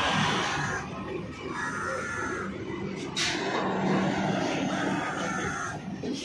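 Express train's coaches rolling slowly along a platform, a steady rumble of wheels with brief longer high tones over it.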